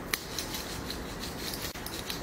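Hands rubbing lotion into the skin of the arm, a quick run of short rasping strokes, with one sharp click just after the start.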